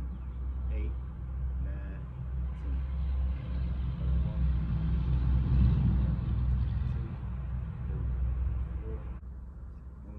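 A car driving past on the street, its sound building to a peak about halfway through and then fading, over a steady low rumble.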